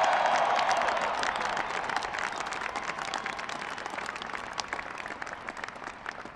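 A large crowd applauding, with a burst of cheering at the start; the clapping fades away gradually.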